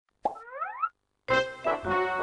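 A cartoon plop followed by a short rising slide, like a slide whistle, then after a brief silence, upbeat music with a steady beat starts a little past a second in.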